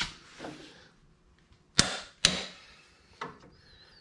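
Two sharp metallic clicks about half a second apart from a click-type torque wrench on a long extension, signalling that the subframe bolt has reached its set torque of 74 ft-lb.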